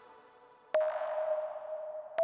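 A Serum synth's reverb tail fading out, then a single synth note that starts with a click less than a second in and holds at one pitch while slowly fading, as a note is previewed in the piano roll.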